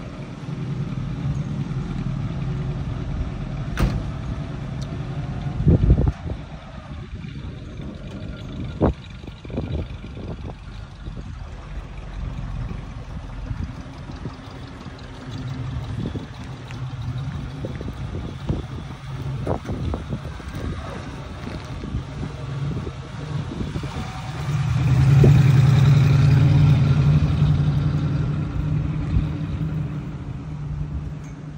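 1965 Oldsmobile Cutlass convertible's 330 V8 running, with a single sharp knock a few seconds in. It then pulls out and accelerates, loudest about 25 seconds in, before fading as it drives away.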